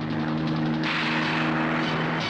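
Small bubble-canopy helicopter flying low overhead: a rapid chop from the rotor over a steady engine drone.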